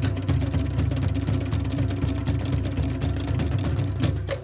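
Tahitian drum ensemble, to'ere slit drums over deep bass drums, playing a fast, dense rhythm. The strikes run together into a continuous low rumble.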